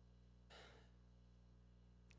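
Near silence with a low steady hum, broken about half a second in by one faint, short breath picked up by a handheld microphone.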